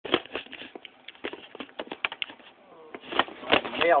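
Handling noise: irregular knocks, bumps and rubbing as the camera is moved about next to an acoustic guitar, with a voice starting near the end.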